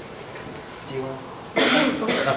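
A person coughs once, sharply, about one and a half seconds in, over a quiet room.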